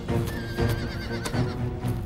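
A horse whinnies once, a quavering call that falls in pitch over about a second, over background music with steady held notes.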